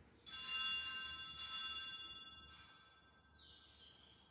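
Altar bell rung by the server at the elevation of the consecrated host or chalice during Mass: a sudden bright ringing of several quick strokes lasting about two seconds, then dying away.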